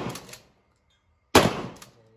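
Shotgun fired once about a second and a half in, a sharp loud report that dies away within half a second; the opening half second holds the fading tail of a shot fired just before.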